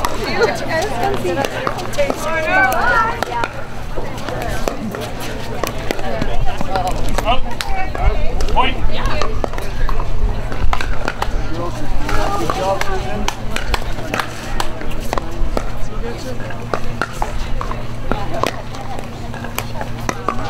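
Pickleball rally: paddles hitting the hollow plastic ball in a run of sharp, irregular pops, with spectators' voices in the background.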